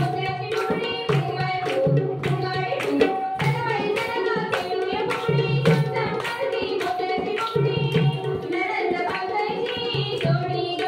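A woman singing a Marathi fugdi song into a microphone, over a steady beat of dholki drum strokes and the dancers' hand claps, about two beats a second.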